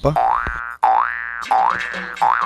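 Cartoon-style boing comedy sound effect, repeated three times at an even pace of about one every three-quarters of a second, each a quick rising springy twang.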